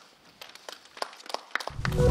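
Sparse, irregular hand claps from a few people at the close of a speech. Near the end a low swelling transition sound rises in as the outro music starts.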